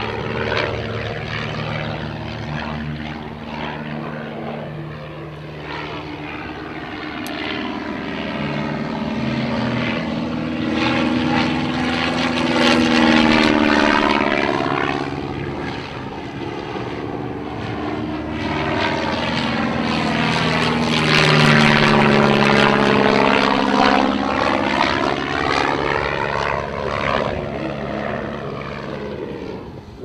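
De Havilland Tiger Moth biplane's engine and propeller in flight, swelling to two loud peaks as it passes close, about a third of the way in and again about two-thirds in. The engine pitch drops as each pass goes by.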